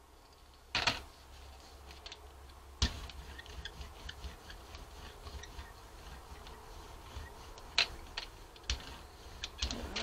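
A hand brayer rolling acrylic paint out across a gel printing plate: a steady rolling noise full of small ticks, starting about three seconds in. Sharp knocks come about a second in, at about three seconds and near eight seconds, as tools are handled on the table.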